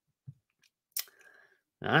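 A quiet room with a faint low thud, then a single sharp click about a second in, followed by a man's voice near the end.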